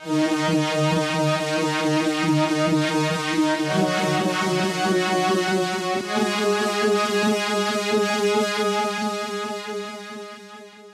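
Korg minilogue synthesizer played through a Moog Moogerfooger lowpass filter pedal, its built-in envelope follower moving the filter cutoff with the signal strength for a pulsing "womp, womp" sound. The tone moves to a different note about three and a half seconds in and fades near the end.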